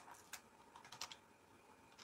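Faint computer keyboard typing: a handful of separate keystrokes.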